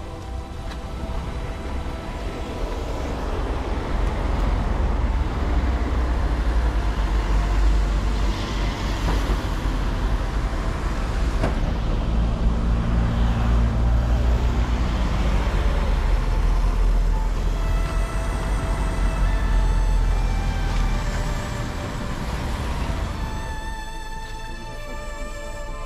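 Road traffic: motor vehicle engine and tyre noise that builds over the first few seconds, holds through the middle and eases off near the end. Faint music comes in during the last few seconds.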